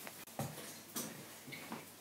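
Soft knocks of footsteps and of a handheld camera being handled while it is carried, three of them about half a second apart over quiet room noise.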